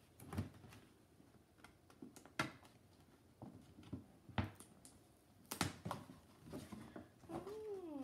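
Tissue paper and a gift bag rustling and crinkling as a present is unpacked by hand, with several sharp crinkles a second or two apart. Near the end a drawn-out voice with a wavering pitch comes in.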